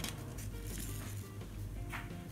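Steady low hum of a tumble dryer running in the background, with faint scratching of a Sharpie marker tracing around a card on fabric.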